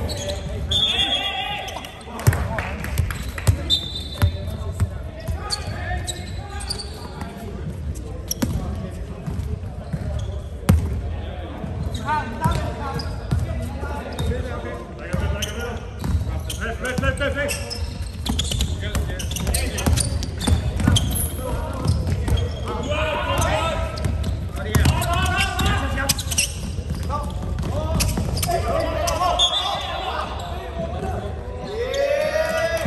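A basketball game on an indoor court: the ball bouncing repeatedly on the hard floor as it is dribbled, with short high squeaks of shoes, echoing in a large hall. Players' voices call out now and then, more so in the middle and second half.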